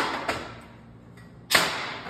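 Air tool working the clamp screws of a JLT bar-clamp carrier: two short, sharp bursts about a second and a half apart, each trailing off over about half a second.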